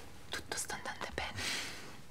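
A person whispering a few words.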